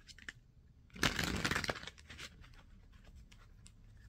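Tarot cards being shuffled by hand: a few light clicks, then a dense burst of shuffling lasting under a second about a second in, and a shorter one just after.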